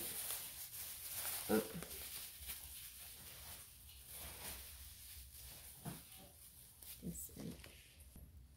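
Thin plastic grocery and produce bags rustling as they are handled and picked open.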